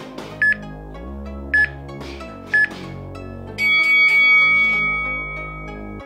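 Workout interval timer counting down the end of a round: three short beeps a second apart, then one long, higher beep marking the switch to rest, over background music.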